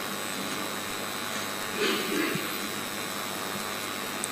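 Steady background hiss with faint high, steady whines, the room and sound-system noise under a pause in the reading. About two seconds in there is a brief, faint vocal sound from the reader.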